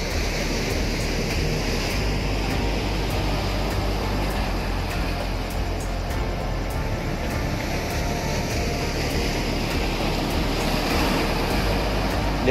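Steady rushing noise of wind and water at the shoreline, even and unbroken, with music faintly underneath.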